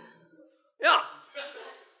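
Speech only: a single short spoken 'yeah', followed by a fainter, softer vocal sound.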